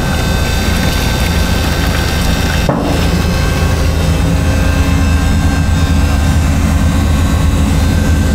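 A motor runs steadily with a low drone while green coolant is pumped into radiant-floor heating lines. There is a short click a little under three seconds in.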